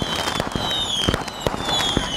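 Fireworks going off: rapid crackling pops and bangs, with several whistles that slide down in pitch.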